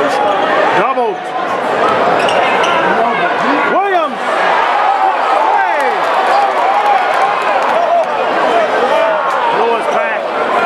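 Sneakers squeaking on a hardwood basketball court in short rising-and-falling chirps, strongest about a second in and near four seconds. A ball is being dribbled over the steady noise of a crowd.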